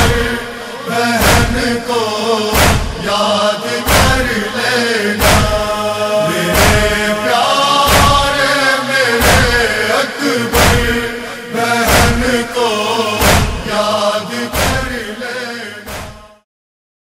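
A noha (Muharram lament) sung as a wordless chant, wavering and with some long held notes, over a heavy matam beat, one stroke about every second and a third. It fades out at the very end.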